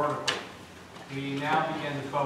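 A man speaking, with a short sharp sound just after the start and a brief pause before his talking resumes.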